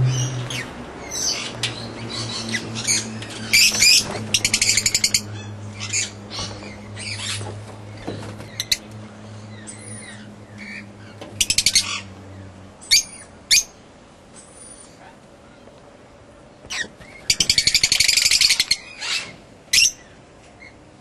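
Birds chirping and calling, with repeated short high calls and several fast buzzy trills, the longest near the end. A low steady hum underneath stops about two-thirds of the way through.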